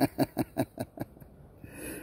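A man laughing in delight, a run of short breathy 'ha' pulses about five a second that tails off about a second in, followed by a breath drawn in near the end.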